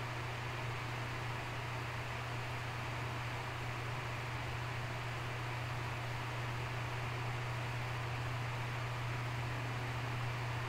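Steady background hiss with a low, even hum underneath; it does not change at any point. This is the recording's room tone.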